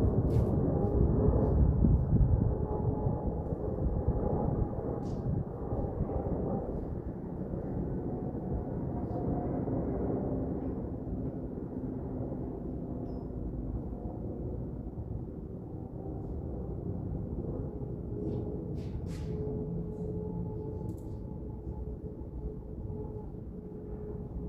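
Steady low outdoor background rumble with a faint wavering hum, a little louder in the first couple of seconds, and a few faint clicks.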